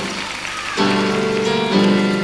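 Piano accompaniment music for a rhythmic gymnastics routine. A noisy, hiss-like passage gives way just under a second in to a new set of held chords.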